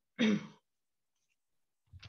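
A short sigh from a person, falling in pitch, followed by silence.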